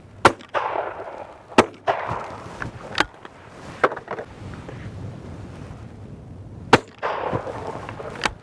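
Shotgun shots: three loud reports, about a quarter second in, about a second and a half in, and near the end, each trailing a short echo, with a couple of fainter cracks in between.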